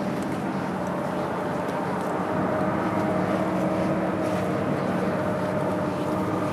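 A steady mechanical hum holding a low tone and a higher tone over a faint even background noise.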